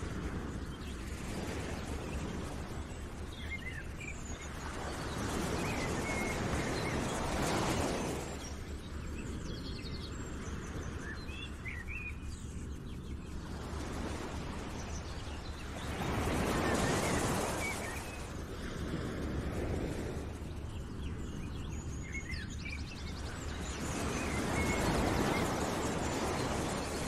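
Outdoor nature ambience: scattered bird chirps over a rushing noise that swells and fades three times.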